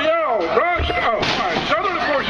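Voices shouting over a pro wrestling match, with a heavy thud a little under a second in, typical of a body hitting the wrestling ring.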